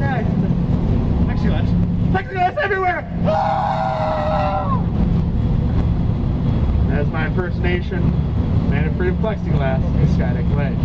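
Speedboat engine running in a steady low drone under a man's voice over a microphone. About three seconds in comes a long, held shout of about a second and a half, falling off at the end.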